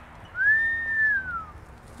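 A single clear, high whistle-like tone, about a second long, that slides up, holds steady, then slides down and fades.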